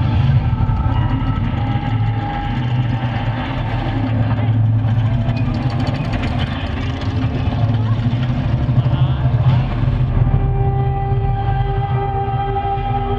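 A festival stage sound system playing a deep ambient drone: a heavy low rumble under long held tones, with no beat.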